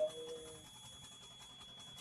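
A man's voice holding a drawn-out hum that fades out within the first second, then a quiet background with a faint steady high-pitched whine.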